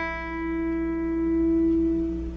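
Open high E string of an acoustic guitar in standard tuning, plucked once and left ringing, its single note sustaining and slowly fading.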